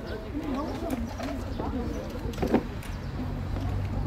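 Indistinct voices of people talking in the background, with a single sharp knock about two and a half seconds in.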